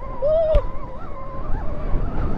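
Rawrr Mantis X electric dirt bike's motor whining steadily under way through thick grass, with wind rumbling on the microphone. A short tone rises and falls, with a sharp click, about half a second in.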